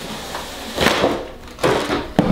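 A rigid cardboard gift box being opened by hand: a short scrape as the lid comes off about a second in, and a sharp knock near the end.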